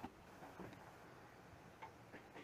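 Near silence with a few faint, irregular clicks.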